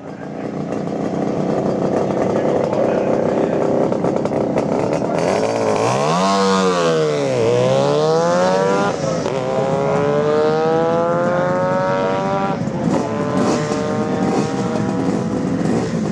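1972 Suzuki T500 Titan's 493cc two-stroke parallel twin held at steady revs, then about five seconds in accelerating hard away. Its pitch climbs in several runs, each ending in a drop as it shifts up a gear.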